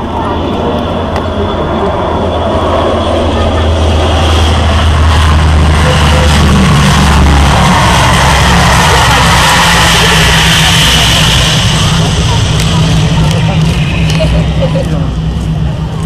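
The four turboprop engines and propellers of a C-130H Hercules running loud as it lands and rolls out along the runway. The sound swells as it passes and eases near the end, and about seven seconds in the deep drone steps up to a higher one.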